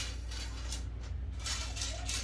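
Faint handling noise from a carbon fishing rod: a light click at the start, then soft rubbing as a hand moves over the rod blank, over a steady low hum.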